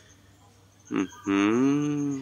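A brief low call about a second in, then a longer, steady, low-pitched drawn-out call lasting about a second.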